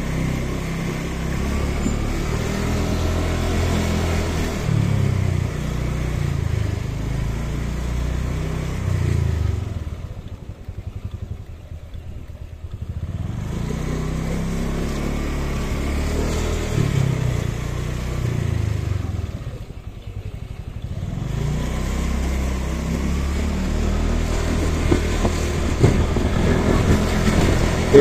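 Motorcycle engine running under way, its pitch rising and falling with the throttle, and twice easing off to a much lower, quieter run for a couple of seconds.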